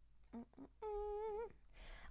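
A woman humming: two quick short notes, then one steady held note lasting just over half a second that wavers at its end.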